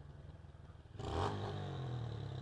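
Motorcycle engine running at low speed as the bike rolls in to the curb. About a second in it gets suddenly louder, with a clatter, and stays at that level.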